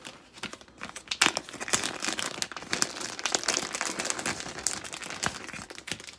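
Clear plastic packaging crinkling as a new line holder is unwrapped from it by hand, with many sharp crackles.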